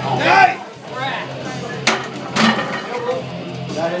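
Shouting at the lockout of a 370 lb bench press, then the loaded barbell racked on the bench uprights with a sharp metal clank about two seconds in and a second knock half a second later, over background rock music.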